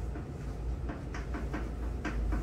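Chalk tapping and scraping on a chalkboard while words are handwritten: a quick series of short, sharp strokes, several a second, over a steady low hum.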